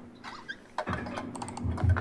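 Scattered clicks and taps of a laptop keyboard and equipment being handled, growing busier about a second in, with a few heavier low thumps near the end.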